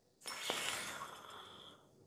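Red-hot glass fusion tube holding sodium metal quenched in cold water: a sudden hiss that fades over about a second and a half, with a single sharp crack just after it starts as the hot glass cracks from the thermal shock.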